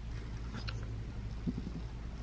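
A quiet pause in the room: a steady low hum and faint background hiss, with a small faint sound about one and a half seconds in.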